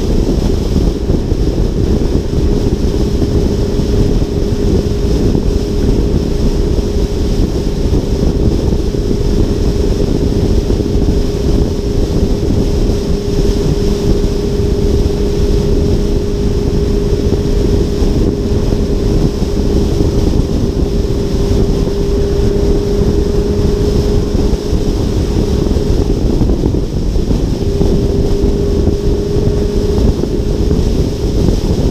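Audi R8 cruising at freeway speed, heard from a hood-mounted action camera: heavy wind rushing over the microphone with a steady engine drone underneath. The drone breaks off briefly near the end and then resumes.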